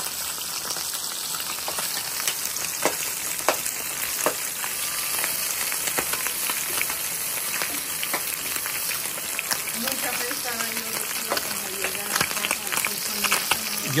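Small fish (chimbolas) frying in oil in a nonstick pan: a steady sizzling hiss with scattered pops and crackles.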